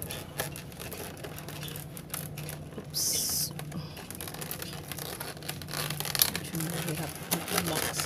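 Stiff clear plastic blister packaging being handled and pried open: irregular crackles, clicks and scrapes of the plastic, with a brief hissing scrape about three seconds in.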